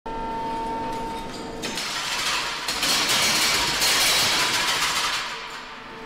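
Remote-controlled demolition robot working: a steady machine whine with a set pitch for about a second and a half, then a loud noisy stretch as its hydraulic breaker arm works into a brick wall, dying down near the end.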